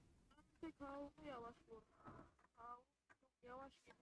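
Faint speech: a voice talking quietly in short phrases, well below the host's speaking level.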